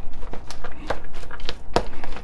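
Hands mixing broccoli salad in a plastic bowl: a run of irregular light clicks and rustles of florets, shredded cheese and raisins against the plastic, with one sharper knock near the end.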